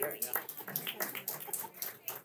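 Indistinct voices in a hall with no clear words, broken by a few short clicks.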